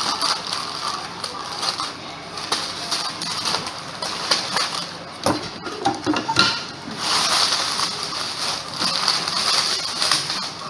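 Plastic and paper packing material crinkling and rustling as a shipping box is unpacked by hand, with scattered small clicks and knocks. The rustling gets denser about seven seconds in.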